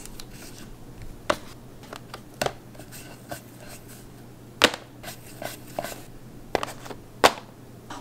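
Hands shaping bread dough into balls on a bamboo cutting board: a handful of sharp, irregular knocks and taps against the board, the loudest about halfway through and near the end, over a faint steady low hum.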